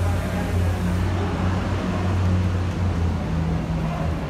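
Steady low rumble of idling vehicle engines, with a continuous drone and no sharp events.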